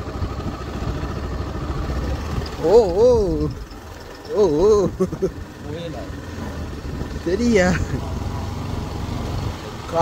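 Motorcycle engine running steadily at low speed, heard from on the bike while it rides over a rough dirt track. A few short voice sounds come through about three, five and seven and a half seconds in.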